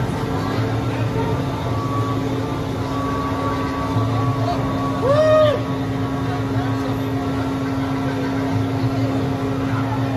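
Boomerang roller coaster machinery humming steadily, with voices in the background. One short rising-and-falling call comes about five seconds in.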